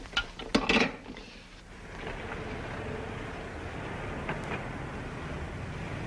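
A telephone receiver clatters down onto its cradle with a few sharp clicks, then a car engine runs steadily.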